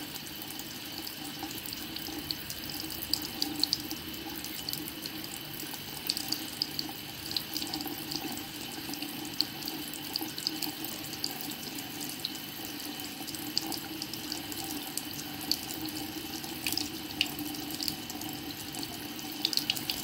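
Bathroom sink faucet running a thin, steady stream of water into the basin and over the drain, with small irregular splashes.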